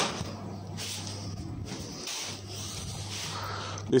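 Faint, uneven rustling and handling noise as a handheld phone is moved about, over a steady low hum.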